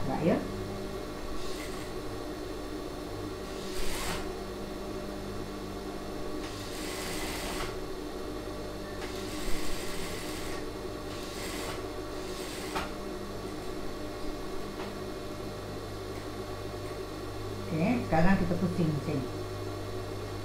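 Industrial sewing machine humming, with short runs of stitching and rustling fabric as the neckline piping is fed through the curve, stop and start.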